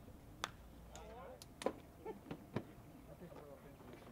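A pitched baseball popping into the catcher's mitt about half a second in, followed by a few more sharp clicks, the loudest a second later, over faint distant voices of players and spectators.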